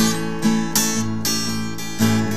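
Acoustic guitar strumming chords in a blues song, each chord ringing until the next strum.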